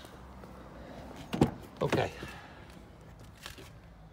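A Ford S-Max's door latch clicks open sharply, with a fainter click a couple of seconds later.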